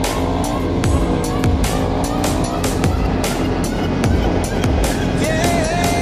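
KTM 690 supermoto's single-cylinder engine accelerating, its pitch climbing several times as it pulls through the gears, mixed with electronic music that has a steady drum beat.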